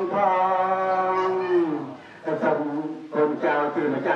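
Buddhist chanting in a long, drawn-out melodic voice. Held notes slide down to a short breath about halfway, then the chant goes on in quicker syllables.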